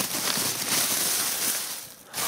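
Thin plastic garbage bag rustling and crinkling as it is handled and pulled open, fading out just before the end.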